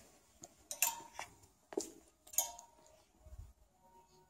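Metal clothes hangers clinking against a clothing rail as garments are moved along it, about four sharp chinks.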